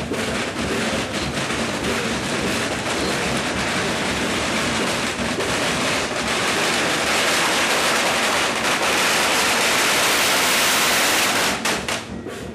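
Strings of firecrackers going off in a dense, continuous crackle of rapid pops. It grows louder about halfway through and drops off sharply just before the end.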